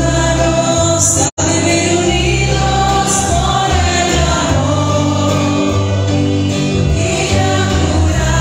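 Choir singing a religious hymn over a low bass accompaniment that moves in held notes; the sound drops out for an instant about a second in.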